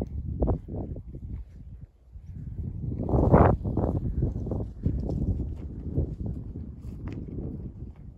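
Wind gusting on the microphone outdoors, with footsteps along a trail; the gusts swell loudest about three and a half seconds in.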